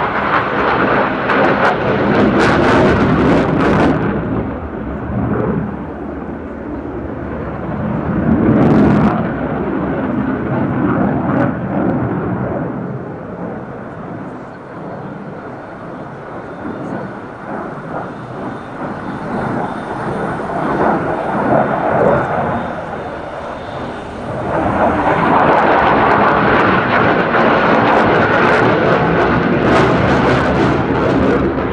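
Jet noise from a JF-17 Thunder fighter's single Klimov RD-93 turbofan during a flying display. It is loud at first, fades through the middle as the jet moves off, and swells loud again over the last few seconds as it comes back round.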